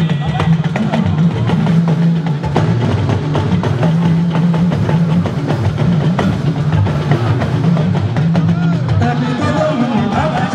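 Live band music driven by dense drumming and percussion over a heavy bass line.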